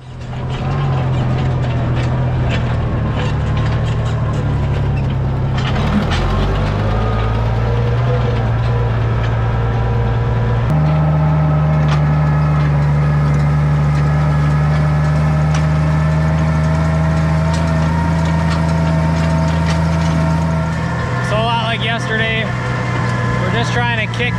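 Oliver 1650 tractor engine running steadily under load while pulling a hay rake through alfalfa windrows. Its note steps to a new steady pitch twice, about six and eleven seconds in.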